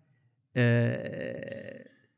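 A man's drawn-out hesitation sound, a held 'ehh' on one steady pitch that starts about half a second in and fades away, turning creaky, as he searches for the next word.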